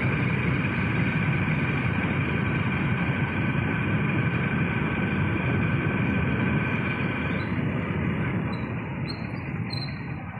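Wind rushing over the microphone of a moving two-wheeler, mixed with its engine and tyre noise, steady throughout and easing slightly near the end.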